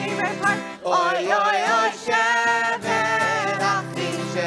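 A group of young and adult voices singing a song together, accompanied by acoustic guitars, with a few longer held notes in the second half.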